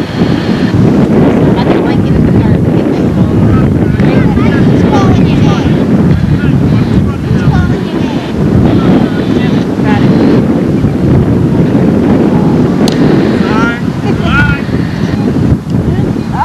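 Wind buffeting a camcorder's built-in microphone: a loud, steady rumble throughout, with faint distant voices calling from the field behind it and a single sharp click about 13 seconds in.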